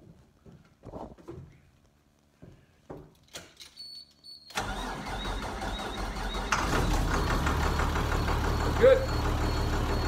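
A few clicks and knocks, a brief high tone, then a school bus engine is cranked by its starter from about halfway through, catches about two seconds later and runs louder with a deep rumble. The engine starting shows the disconnected emergency-window interlock switch no longer blocks starting.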